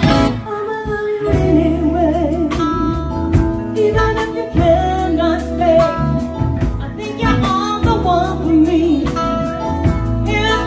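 A live band playing: a woman sings the lead with a wavering vibrato over electric bass, electric guitar and a drum kit, heard through the venue's PA.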